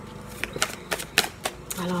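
Tarot cards being handled by hand: about six sharp, irregular card snaps and clicks as the deck is worked.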